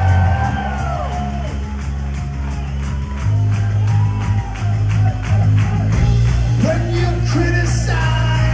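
A rock band playing live in a hall: electric bass holding loud low notes that change every few seconds, over a steady drum beat with cymbals.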